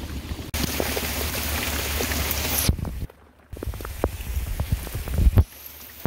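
Heavy rain pouring down on open water and an open boat, loudest in the first half. The sound cuts out for a moment about three seconds in, then the rain goes on with scattered knocks.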